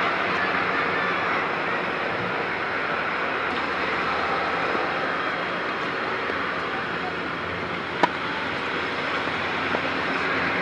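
A tennis ball struck by a racket gives a single sharp pop about eight seconds in, with a fainter tick near the end. Both sit over a steady rushing outdoor background noise.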